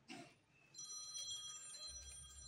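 An electronic ringing tone like a phone's, several high pitches held together, sets in about two-thirds of a second in and stays steady for over a second.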